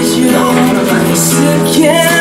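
Live acoustic guitar with a man singing along, held notes gliding in pitch over the guitar.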